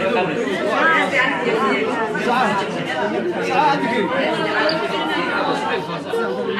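Several people talking over one another: continuous overlapping chatter of voices.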